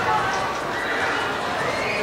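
High-pitched shouting voices of players and spectators in an indoor sports hall, with one call rising in pitch over the last second.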